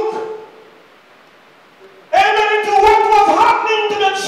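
A man's amplified voice through a microphone in a hall: a held note trails off at the start, a pause of about a second and a half follows, then long, drawn-out preaching phrases resume about two seconds in.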